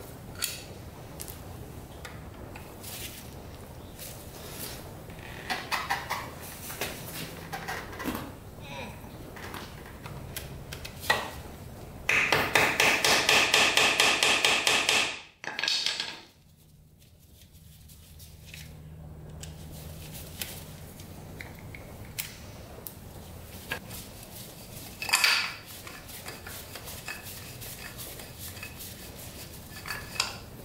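A screwdriver working the screws out of the Yamaha CS200's metal oil pump cover: scattered small metal clicks and scrapes. Midway comes a loud run of fast, even clicking lasting about three seconds, which cuts off suddenly.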